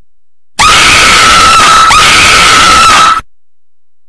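A woman's high-pitched scream, very loud and distorted, held on one wavering pitch for about two and a half seconds. It starts about half a second in and cuts off sharply.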